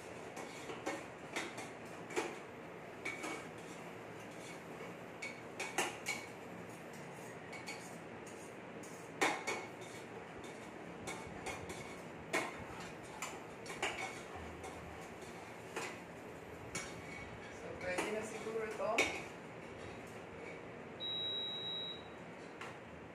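Metal stirring utensil clinking and scraping against a small stainless steel saucepan while a cheese and flour sauce is stirred on an induction hob: light, irregular clinks about once a second. A short high beep sounds near the end.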